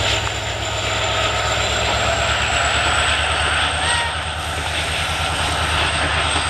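Indian Railways diesel locomotive passing at close range with passenger coaches, its engine running steadily with a low pulsing beat. A steady high whine sits above it, rising slightly in pitch.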